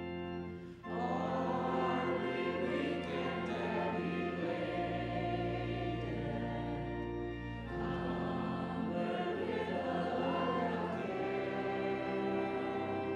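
Slow hymn sung by a group of voices over sustained instrumental accompaniment, with a brief breath between phrases about a second in.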